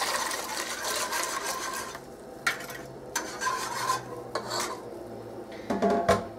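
Wire whisk stirring a thin egg-yolk and cream custard in a metal saucepan while more of the mixture is poured in, a steady scraping swish that is louder for the first two seconds and then quieter.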